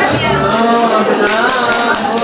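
Several people's voices talking over one another in a room, with no single clear speaker.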